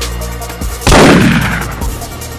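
A single loud gunshot about a second in, its report trailing off over roughly a second, over background electronic music with a steady beat.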